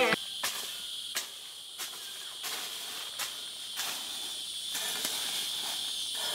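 A short-handled hoe chopping into dry soil and leaf litter, about eight even strokes, roughly one every two thirds of a second, as the ground around a tree's base is loosened. A steady high chorus of crickets or cicadas runs underneath.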